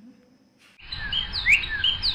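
Birds chirping, short rising and falling calls that start suddenly just under a second in over a steady background ambience and come quicker toward the end.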